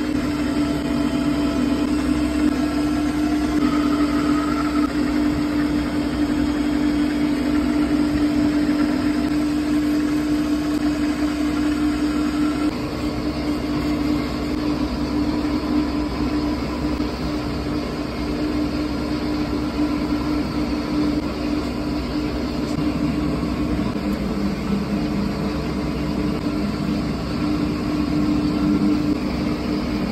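Electric potter's wheel running steadily with a constant motor hum while wet clay is thrown on it.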